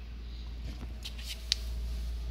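A steady low hum, with a few faint clicks between about one and one and a half seconds in.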